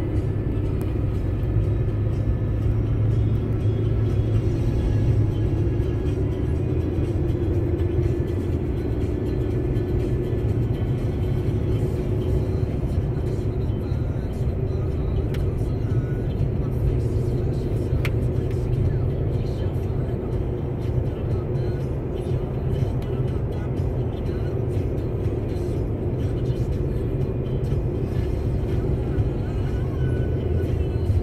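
Steady low drone of a vehicle's engine and tyres on a snow-covered highway, heard from inside the cab while driving at an even pace.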